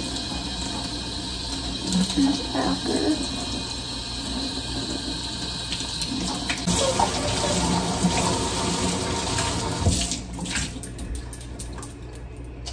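Kitchen tap running into a sink, a steady rush of water that eases off near the end.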